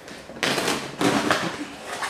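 Clear plastic bag crinkling and crackling as it is pulled off a cardboard shipping box, starting about half a second in and growing sharper about a second in.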